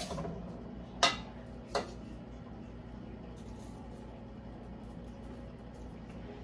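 A spoon clinking sharply against dishware a few times in the first two seconds, as streusel crumble topping is spooned onto muffin batter. A faint steady hum underneath.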